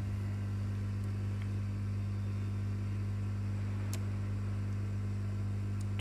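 A steady low hum, with a faint tick about four seconds in.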